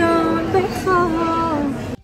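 A woman singing long held notes that bend and waver in pitch, over low background noise, cut off abruptly near the end.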